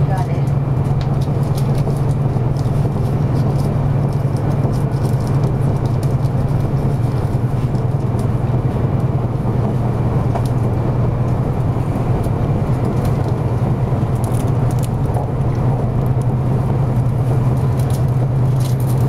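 Cabin running noise of a 200 series Shinkansen train on the move: a steady low hum under an even wash of rolling noise.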